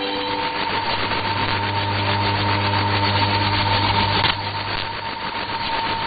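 Shortwave radio reception with no programme audio: steady static hiss with a thin whistle near 1 kHz and a low hum underneath. A sharp click about four seconds in is followed by a slight drop in level.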